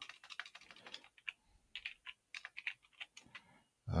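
Computer keyboard typing: a run of irregular, quick key clicks.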